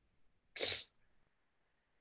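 A person sneezing once, a short sharp burst about half a second in.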